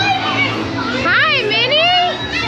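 Voices of children and adults chattering, with high-pitched, swooping exclamations from about a second in, over faint background music.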